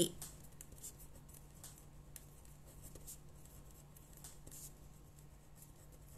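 A pen writing by hand on a sheet of paper: faint, short scratching strokes coming irregularly as a few words are written.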